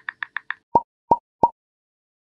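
Animated-graphics sound effects: a quick run of light ticks, then three louder plops about a third of a second apart as three icons pop onto the screen.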